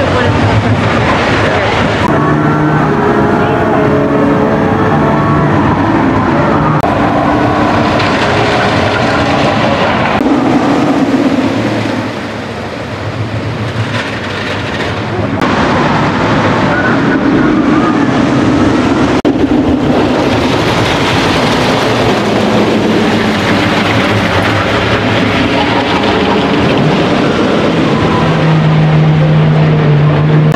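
Roller coaster trains running on their tracks, a steady rumble with riders' screams, changing abruptly several times.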